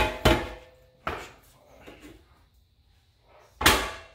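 Metal kitchenware knocking on the countertop as an aluminium cheesecake pan and a stainless steel mixing bowl are set down and moved. There are two sharp knocks at the start, a lighter one about a second in and a loud one near the end, each with a brief metallic ring.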